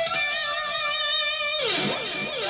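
Electric guitar holding a long sustained lead note with vibrato, then sliding down in pitch about a second and a half in.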